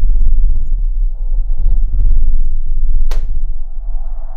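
A loud, low rumbling drone with a fast fluttering texture, and a single sharp hand clap about three seconds in.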